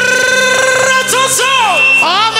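A male vocalist singing live through a microphone at a wedding reception. He holds a long note for about a second, then sings short curling, ornamented phrases over a steady instrumental backing.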